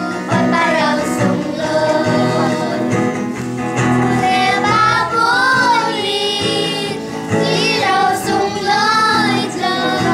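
A small group of children singing a song in unison, with a steady musical accompaniment underneath.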